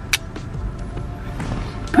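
A disposable film camera's shutter clicks once just after the start, followed by the faint, rising high whine of its flash recharging, over background music.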